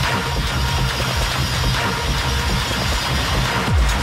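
Techno DJ mix playing at full level: a dense, driving track with a heavy bass line. Near the end, deep kick drums that drop quickly in pitch come in.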